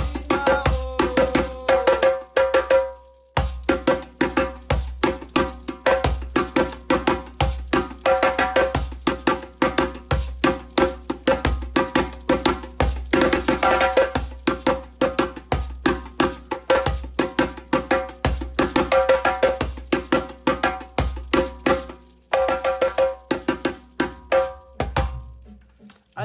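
Djembe played with bare hands at full tempo: a fast, driving run of strokes, about five or six a second. It breaks off briefly about three seconds in and again near the end.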